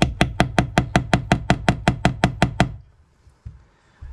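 Claw hammer striking a hole punch in quick, even blows, about six a second, driving it through curtain fabric onto a wooden board to cut a hole for a press stud. The hammering stops a little under three seconds in.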